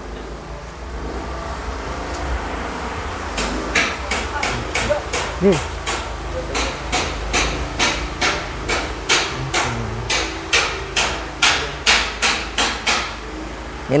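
A long run of sharp, evenly spaced knocks like hammer blows, about three a second, starting a few seconds in and stopping shortly before the end, over a steady low hum.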